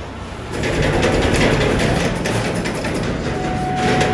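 Resistance spot welding of steel cage wire: dense crackling of sparks over a steady machine rumble, getting louder about half a second in.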